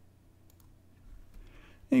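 A few faint computer mouse clicks about half a second in, over quiet room tone; a man's voice begins right at the end.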